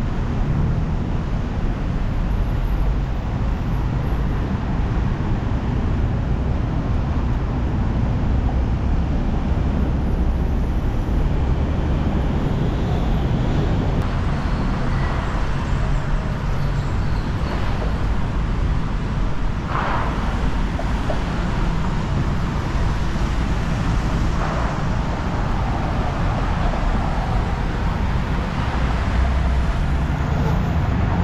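Road traffic on a busy city street: a steady low rumble of car and motorcycle engines and tyres. A few vehicles pass closer and louder in the second half.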